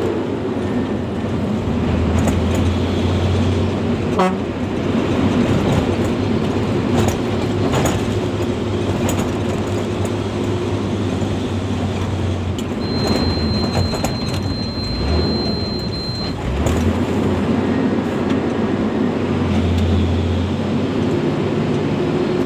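Hino 500 truck's diesel engine running, heard from inside the cab on a rough dirt road, with scattered knocks and rattles from the cab over bumps. A thin high tone sounds for about three seconds just past halfway.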